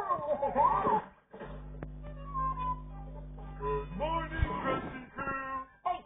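A cartoon soundtrack playing through a TV speaker, picked up by a phone: music and effects with sliding pitches, and a steady low hum in the middle that cuts off sharply after about four seconds.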